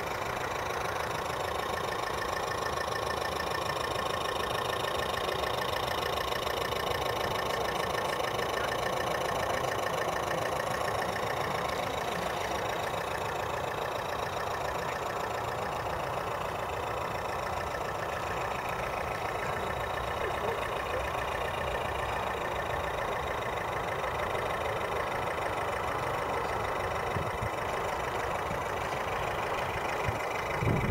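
Radio-controlled model lifeboat's motor running steadily at cruising speed, an even drone with a high whine. Wind rumble on the microphone sits underneath.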